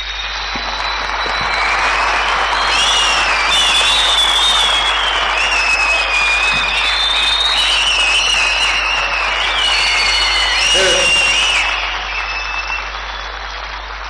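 Audience applauding steadily after a speech, with high wavering tones over the clapping; the applause dies down near the end.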